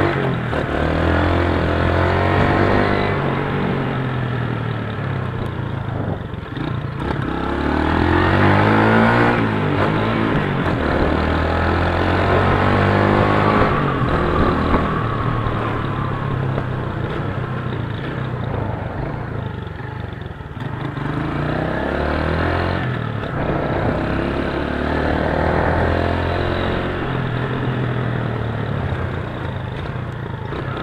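Motorcycle engine under way, its note repeatedly climbing under throttle, dropping at each gear change and holding steady while cruising, over a steady rushing noise from riding.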